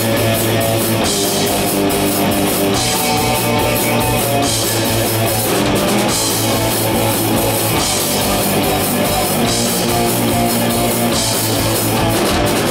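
A punk rock band playing live: loud distorted electric guitars, bass and a drum kit driving a fast, steady beat, with a bright cymbal wash coming back every few seconds.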